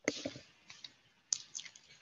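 Sharp clicks and light rustling close to a headset microphone. There are two loud clicks about a second and a quarter apart, the first right at the start, with lighter ticks between them.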